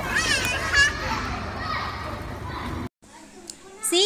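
A young child's high voice over the busy background noise of children at play, which cuts off suddenly about three seconds in.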